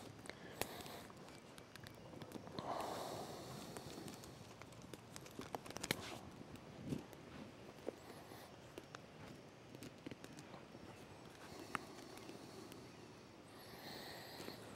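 Faint scattered snaps, clicks and rustles of small twigs being handled and fed into a small smoky campfire of wet wood.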